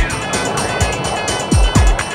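Electronic synthesizer music played on a Kurzweil K2500XS. Deep thumps drop sharply in pitch on the beat over a steady run of quick, high ticks, with swooping synth tones above.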